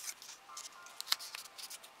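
Pages of a small paper booklet being flipped and handled: a run of short crisp paper rustles and ticks, the sharpest just after a second in. Faint music plays underneath.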